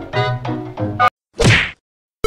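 Upbeat brass swing music that cuts off abruptly about a second in, followed by a single short whack sound effect.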